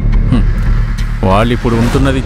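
Speech starts about a second in, over a steady low drone from the background music score.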